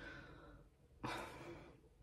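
A woman's audible sigh: one breathy exhale starting about a second in and fading over roughly half a second.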